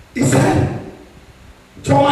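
Only speech: a man preaching through a microphone, one short phrase just after the start and another beginning near the end, with a pause between.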